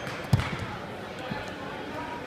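Wrestlers hitting a foam wrestling mat during a takedown: one heavy thud about a third of a second in, followed by smaller scuffs and knocks.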